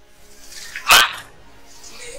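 A dog barks once, sharply, about a second in.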